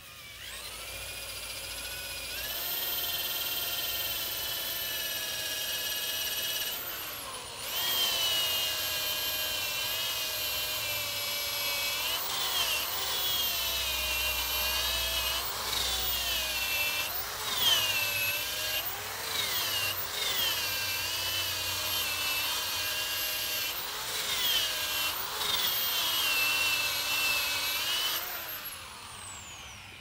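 Handheld rotary tool grinding and cleaning the sole of a horse's hoof: a high motor whine that spins up, dips in pitch again and again as it is pressed into the hoof, stops briefly about seven seconds in, and winds down near the end.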